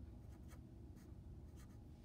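A Sharpie fine-point felt-tip marker writing on paper: a few faint, short strokes as a root sign and a fraction are drawn.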